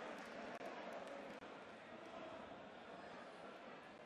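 Faint murmur of an arena darts crowd, slowly dying away.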